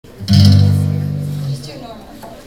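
A single low chord struck once on bass and guitar about a third of a second in, ringing out and fading over about a second.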